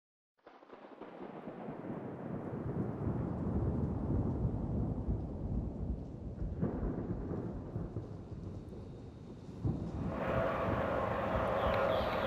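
Low rumbling noise that starts about half a second in, swells over the next few seconds, dies down, then builds again near the end.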